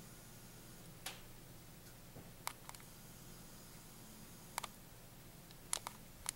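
A handful of sharp, isolated clicks, several in close pairs, over a faint low hum.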